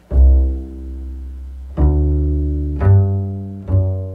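Upright double bass plucked pizzicato, four walking-bass notes each left to ring. It is a jazz-blues line that uses the flatted fifth (G-flat) as a chromatic half-step into the new root, F, of the F7 chord.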